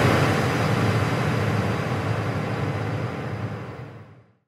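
Sound effect of a logo animation: a noisy whooshing wash with a low rumble, fading out slowly.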